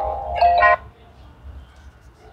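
A short chime-like tune of sustained, bell-toned notes that stops abruptly about a second in, leaving only faint background noise.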